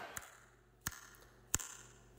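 Two short, sharp clicks about two-thirds of a second apart in otherwise near silence.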